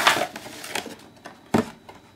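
A cardboard toy box being grabbed and lifted off a table, with rustling handling noise and a short knock about one and a half seconds in.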